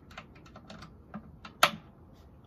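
A run of light clicks and handling knocks as an instrument cable is plugged into an acoustic guitar, with one much louder click about one and a half seconds in.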